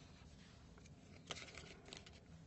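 Faint handling of cardboard game cards: a brief soft rustle as cards are picked up off the play mat, with a couple of light ticks, against near-silent room tone.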